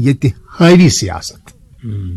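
A man speaking a few words, then a short pause and a low, drawn-out hesitation sound near the end.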